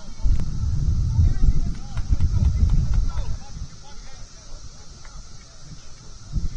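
Low, gusty rumble of wind buffeting the microphone through the first half, over faint distant shouts from players on the field.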